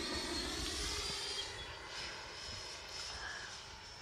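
Freewing F-16 RC jet's 90mm electric ducted fan whining in flight: a steady, high-pitched whine made of many evenly spaced tones.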